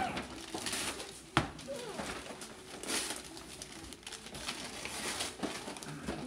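Wrapping paper being torn and crinkled by hand, in irregular rustling bursts, with one sharp tap about a second and a half in.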